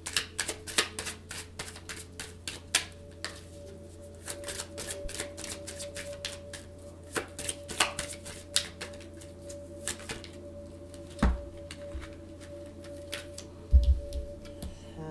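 A deck of tarot cards being shuffled by hand: a quick run of card clicks and snaps that thins out over the last few seconds, with one heavier thump about three-quarters of the way through.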